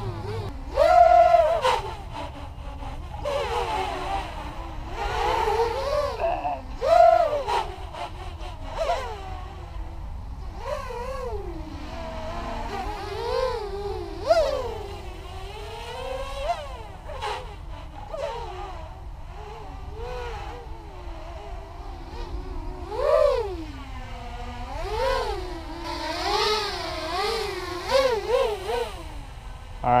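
ImpulseRC Alien 6-inch racing quadcopter in flight, its four KDE 2315 brushless motors and 6-inch propellers buzzing. The pitch repeatedly glides up and sinks back as the throttle is punched and cut.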